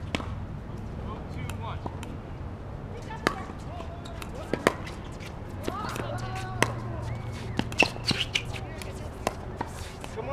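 A pickleball rally: sharp, hollow pops of paddles striking a plastic pickleball, irregularly spaced, with a quick run of hits in the second half. Faint voices on the courts behind.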